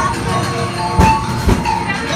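Haunted-house soundtrack of droning music and rumbling effects, with two loud bangs about half a second apart near the middle.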